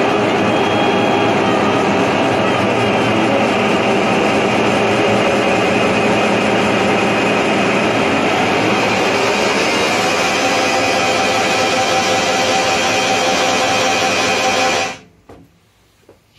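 Loud, dense wall of noise music from a tenor saxophone and live electronics (guitar, pad controller and effects pedals), with held pitched tones coming in about ten seconds in. It cuts off abruptly about fifteen seconds in, ending the piece, and a few faint clicks follow.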